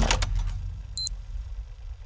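A few faint clicks, then a single short high-pitched electronic beep about a second in, the signal of a recording device starting to record, over a steady low rumble.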